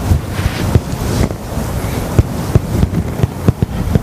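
Cloth rubbing against a body-worn microphone as a towel wipes the face, a loud rough scraping noise broken by irregular knocks and bumps.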